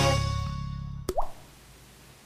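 The tail of a TV programme's intro music fading out, then a single short cartoon-like plop with a quick rising pitch about a second in.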